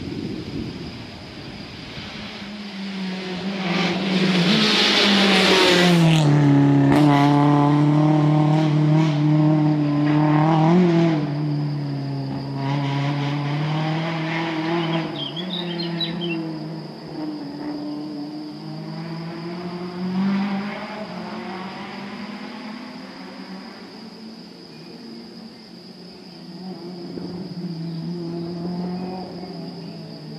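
Rally car engine at full throttle, approaching and passing close by about five or six seconds in with a drop in pitch, then pulling away with short breaks in pitch at gear changes, fading slowly as it climbs away.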